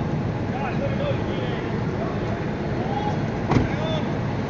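Steady low rumbling city street noise with faint voices in the distance and one sharp knock about three and a half seconds in.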